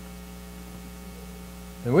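Steady electrical mains hum, a low buzz made of evenly spaced tones that stays level throughout; a man's voice starts near the end.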